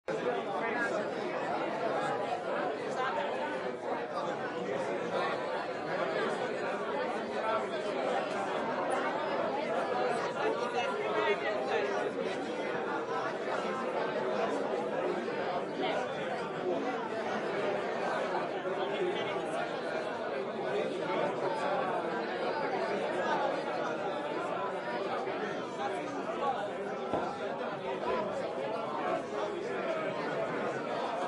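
A roomful of people chatting at once: a steady hum of overlapping conversation, no single voice standing out.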